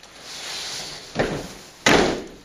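Drill squad's boots stamping in unison on a hall floor: a heavy thud about a second in and a louder one near the end, after a rising rustle of movement.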